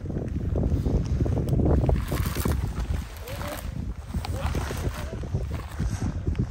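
Wind buffeting the microphone on open moorland, a heavy, uneven low rumble, with faint voices in the distance now and then.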